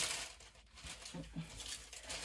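Faint rustling of double gauze fabric being handled and lifted from a table, with a brief murmured vocal sound about a second in.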